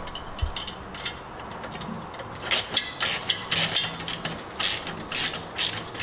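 Hardware on a pressure washer's hose reel being handled as a keeper loop is taken off: a soft thump about half a second in, then from about halfway a quick, irregular run of sharp clicks and rattles, several a second.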